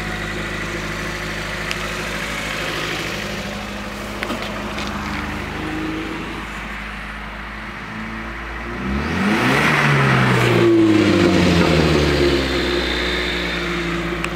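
Off-road 4x4's engine idling steadily, then revved from about nine seconds in, rising in pitch and getting louder.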